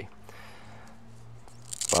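Faint rustle of a woven nylon watch band being folded and handled, over a steady low hum. Speech starts near the end.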